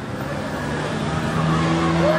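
A motor vehicle engine running and getting steadily louder over the two seconds.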